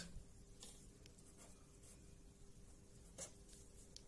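Faint scratching of a pen on paper as short lines and arrowheads are drawn, a few brief strokes with the clearest one near the end.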